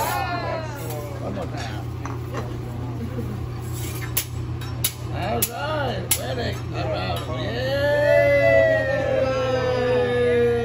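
Metal hibachi spatula clacking on the steel teppanyaki griddle, four sharp strikes about half a second apart in the middle, amid voices. Near the end a voice holds one long note that slowly falls, over a steady low hum.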